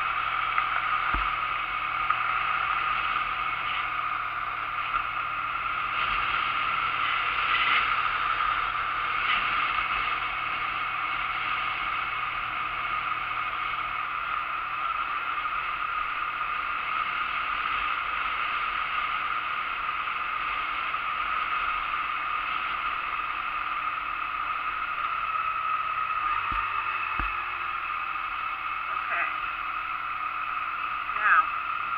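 2008 Honda Nighthawk 250's parallel-twin engine running steadily at road speed, under wind and road noise on a bike-mounted camera's microphone; the engine note shifts about halfway through and again near the end.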